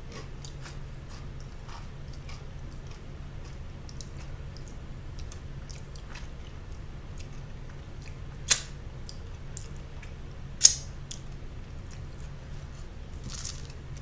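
A person chewing and working the mouth: faint wet clicks of lips and tongue, with two sharper, louder clicks a little past halfway, about two seconds apart. A steady low hum runs underneath.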